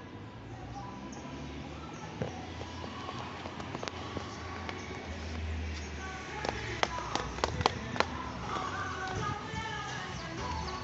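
Footsteps going down stone stairs: a quick run of sharp clacks a bit past halfway, the loudest sounds here, over a background of voices and music.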